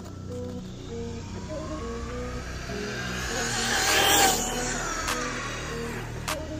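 Arrma Outcast 4S RC truck's brushless motor and gears whining under full throttle, rising in pitch from about a second in, loudest with a rush of tyre noise around four seconds, then falling away as the truck speeds off. Background music plays throughout.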